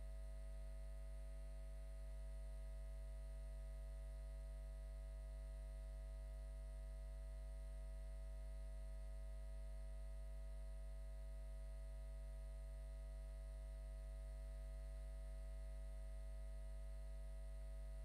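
Faint, steady electrical hum made of several fixed tones, with no room sound at all; the hall's sound is cut off suddenly just before and comes back just after, leaving only line hum from the audio chain.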